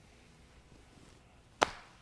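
Near-quiet room with a single short, sharp click about one and a half seconds in.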